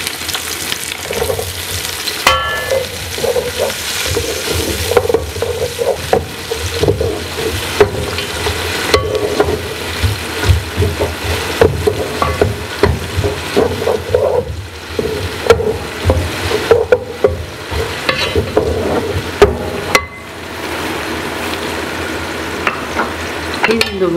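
Chopped onions frying in hot oil in a metal pot, with a steady sizzle. A spoon scrapes and knocks against the pot as they are stirred, and the stirring stops near the end while the sizzling goes on.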